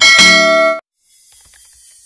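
Notification-bell chime sound effect from a subscribe-button animation: a bright ringing tone that cuts off suddenly under a second in, followed by faint hiss.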